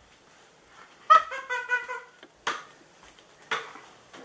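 A girl's high-pitched, wordless cry in short broken bits about a second in, then two sharp sudden sounds about a second apart.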